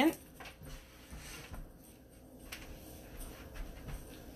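A quiet room with a few faint, scattered clicks and knocks: bangle bracelets being picked up off the floor out of sight.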